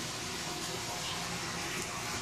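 Steady, even hiss of background noise with no distinct events.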